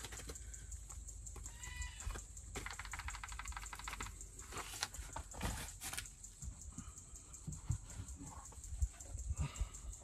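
A plastic flour bag being handled as flour is shaken from it into a camp oven: faint crinkling, with a quick run of light clicks about three seconds in.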